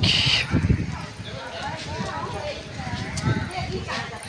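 Irregular low thumps of footsteps and handling on a hand-held phone's microphone as the person holding it walks, with a short hiss about the start and faint voices underneath.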